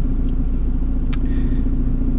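Steady low rumble of a running car, heard from inside its cabin, with a light click just over a second in.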